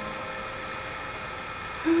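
Faint steady hiss of a quiet room with the guitar silent, then a woman hums a single held note near the end.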